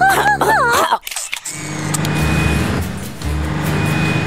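Cartoon sound effect of a vehicle engine running, a low rumble, under background music. It starts about a second and a half in, after a wavering, warbling voice that cuts off about a second in.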